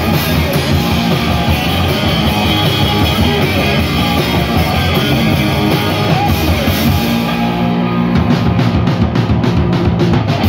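A hardcore punk band playing live and loud: two distorted electric guitars over a pounding drum kit. About eight seconds in the cymbals drop out and the band hits short, evenly spaced stabs.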